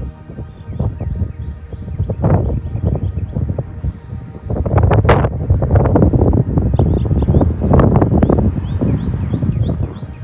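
Wind buffeting the microphone in uneven gusts, louder from about halfway through, with faint music underneath.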